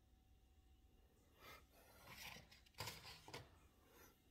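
Quiet room with faint rustling and scraping handling noises, a few short scuffs from about a second and a half in until past three seconds.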